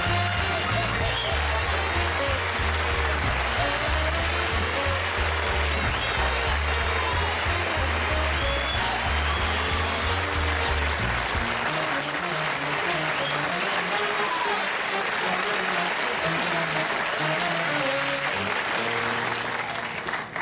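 Studio band playing upbeat walk-on music over steady audience applause for a guest's entrance. The heavy bass line drops out about eleven seconds in, while the band and clapping carry on.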